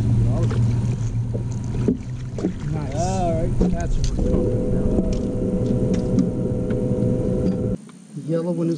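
Motor hum on a bass boat while a fish is netted. A wavering, voice-like call comes about three seconds in, and a steady higher whine starts about a second later and cuts off suddenly near the end.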